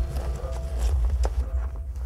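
Wind buffeting the microphone outdoors: a steady low rumble, with one sharp click just over a second in.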